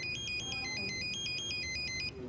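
A phone ringing with an electronic melody ringtone: a quick run of high beeping notes that steps up and down without a break.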